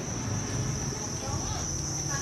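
A dense chorus of farmed crickets chirping in their rearing room, a steady high-pitched trill with a low steady rumble underneath.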